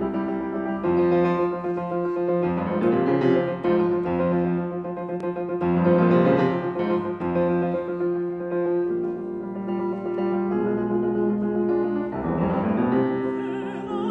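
Grand piano playing a classical introduction. Near the end, a woman's trained classical voice begins to sing with vibrato over the piano.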